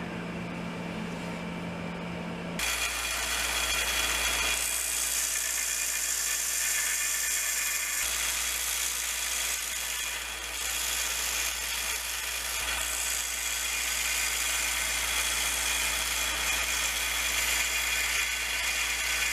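Narrow-belt sander running and sanding a wooden tool handle, a steady machine whir with a gritty grind. It starts as a quieter hum and steps up abruptly about two and a half seconds in, then holds steady with small shifts as the work is pressed against the belt.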